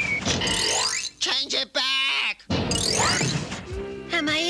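Cartoon soundtrack: music with quick rising whistle-like sound effects and a wavering, voice-like sound in the middle.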